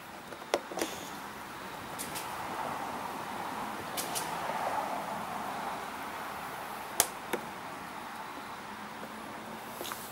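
Fresh gasoline pouring from a plastic fuel can's spout into a push mower's fuel tank, a steady trickling hiss that swells in the middle. A few sharp clicks sound through it.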